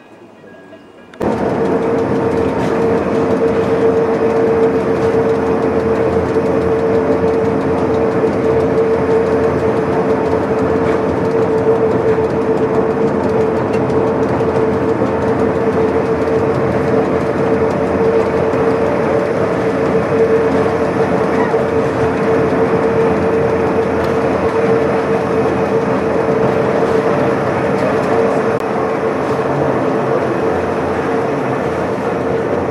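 Old Pilatus Bahn electric rack railcar (Bhe 1/2) heard from inside its cab, running steadily on the cog track. It makes a loud mechanical running noise with a steady whine from the drive. The sound starts suddenly about a second in.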